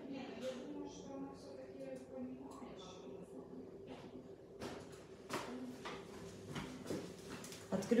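Faint, distant voice in the first few seconds, then a handful of sharp clicks and knocks from handling a nail lamp and its power cable while it is switched back on.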